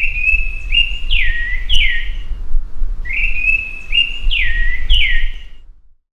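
A bird call: a four-note phrase of a held whistled note, a short note, then two notes sliding down, played twice about three seconds apart. A low rumble runs underneath, and both fade out near the end.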